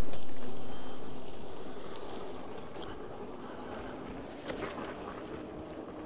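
Wind and road noise from a Veteran Lynx electric unicycle rolling along a dirt trail, its tyre running over the packed dirt, with a faint steady hum. The noise is loudest right at the start and fades down over the first few seconds.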